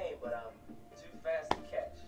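Brief snatches of a voice from the episode's soundtrack, with one sharp click about a second and a half in.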